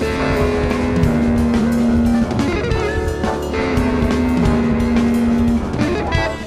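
Jazz-fusion quartet playing live: electric guitar, drum kit, bass and keyboards. Two long notes are held over busy drumming.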